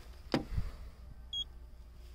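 A handheld paint thickness gauge gives one short, high beep about halfway through as its probe registers a coating-thickness reading on the car's steel body panel. A faint low bump from handling the probe comes just before it.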